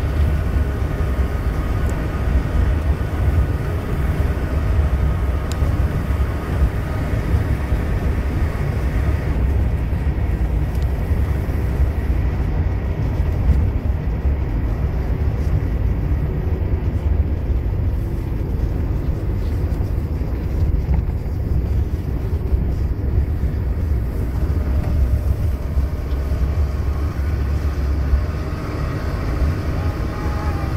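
Car driving at speed along a snow-packed road, a steady loud rumble of engine, tyres and rushing air. A faint steady whine sits above it for the first several seconds and fades about nine seconds in.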